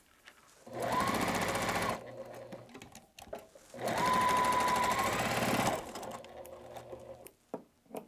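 A Juki sewing machine stitching patchwork pieces in two short runs: one of about a second, then one of about two seconds, each with a steady motor whine. Faint fabric handling in between.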